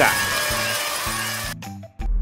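Quiz-game answer-reveal sound effect, a bright noisy shimmer, over light background music; it stops about a second and a half in.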